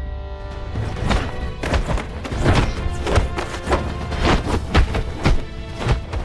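Hand-to-hand kung fu fight sound effects: a fast, uneven string of sharp punch-and-block hits starting about a second in, over a film music score.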